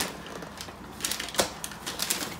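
Cardboard box of plastic bags being picked up and handled, with light rustling and a sharp tap about one and a half seconds in.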